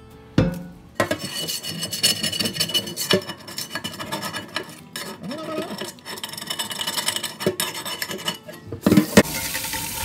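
A metal scraper rasping and scratching caked-on, carbonised crud off the bottom of an old cast iron skillet, in quick rough strokes full of small clicks. Near the end the tap comes on and water runs onto the pan in the sink.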